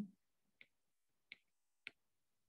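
Three faint, sharp clicks less than a second apart against near silence: a stylus tapping on a pen tablet while handwriting.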